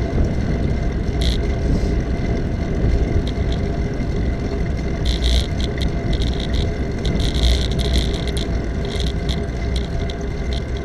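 Steady wind and road rumble on the microphone of a camera mounted on a moving bicycle. Bursts of small rattling clicks come and go, heaviest about five seconds in and again near the eighth second.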